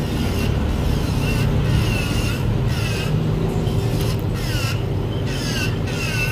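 Electric nail drill grinding an acrylic nail, its high whine dipping in pitch again and again as the bit presses into the nail, over a steady low hum.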